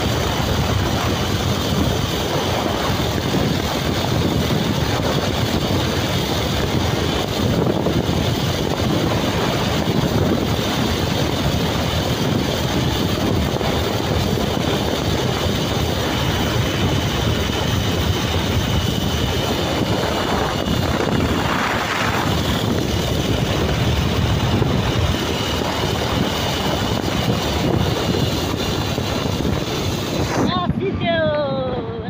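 Wind noise on the microphone of a moving motorcycle, with the bike's engine and road noise underneath, holding steady.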